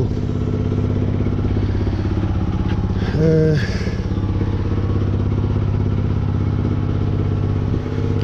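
An engine running steadily at idle, its even firing pulse unchanged throughout.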